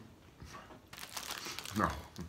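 Plastic wrapping around a popcorn ball crinkling as it is picked up and handled, starting about halfway through.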